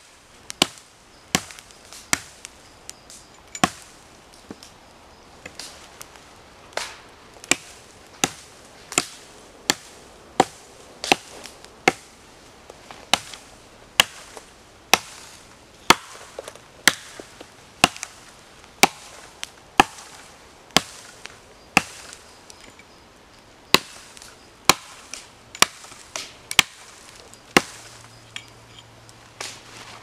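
Dry twigs and kindling snapping in sharp, separate cracks, roughly one or two a second, as a small fire catches on pine fatwood and twig bundles.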